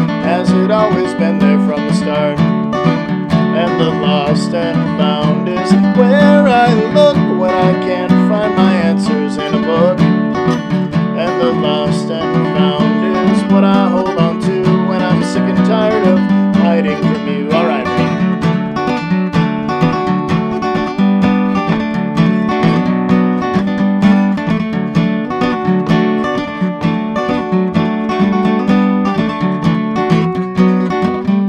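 Steel-string acoustic guitar strummed steadily, a folk song with a man's voice singing over it through roughly the first half, then the guitar carrying on alone.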